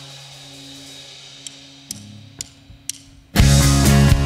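Live band starting a rock song: a held low note, then four sharp clicks about half a second apart as a count-in, and the full band with drums and electric guitar comes in loud near the end.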